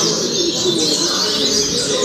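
Double-collared seedeater (coleiro) singing in its cage: quick, repeated chirping phrases, over a dense, unbroken chorus of other birds.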